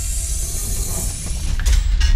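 Animated title-card sound effect: a mechanical whirring over a deep rumble and a high hiss, with a sharp click near the end.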